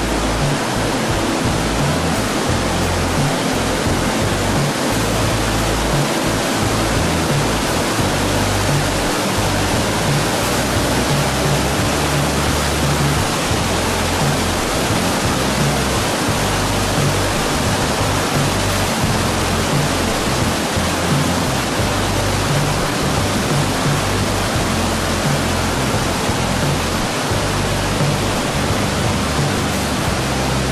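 Shallow stream running fast over a stony channel bed: a loud, steady rush of water.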